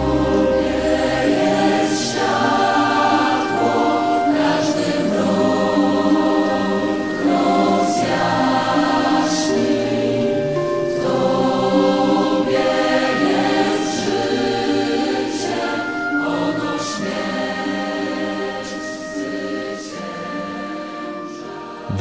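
Choir singing slow choral music in phrases of held chords, easing down a little near the end.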